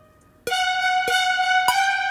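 Orchestral cue played back from sample-library instruments: after a brief near-silent gap, a held brass chord enters about half a second in, punctuated by short accented staccato trumpet notes roughly every half second.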